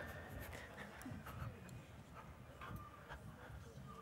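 Quiet hall with faint low room noise, scattered small clicks and shuffling, and a few brief faint high voice sounds as children settle at the microphone.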